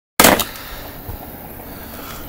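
Two quick sharp knocks or clicks at the very start, the loudest thing here, followed by a steady low background hiss.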